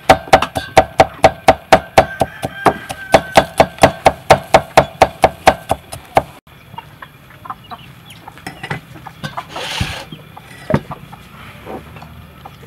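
Cleaver mincing garlic on a thick wooden chopping board: quick, even chops, about four a second, each a sharp knock with a slight ring, stopping abruptly about six seconds in. Fainter scattered small sounds follow.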